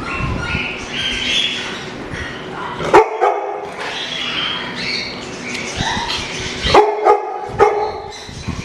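A dog barking: three loud, sharp barks, the first about three seconds in and two close together near the end, with higher-pitched dog sounds between them.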